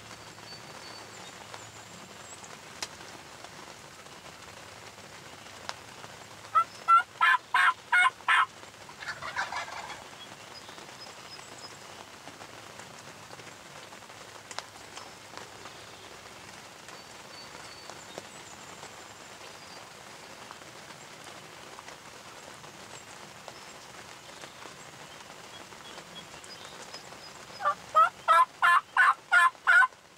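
Eastern wild turkey gobbling twice: once about seven seconds in and again near the end, each gobble a loud, fast rattling run of about six notes. A fainter, blurred call follows right after the first gobble.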